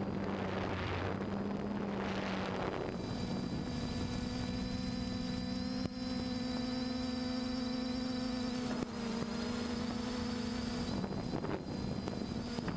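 Quadcopter drone's motors and propellers humming steadily, picked up by its own onboard camera along with wind noise on the microphone. The hum steps up in pitch about three seconds in and drops back near the end.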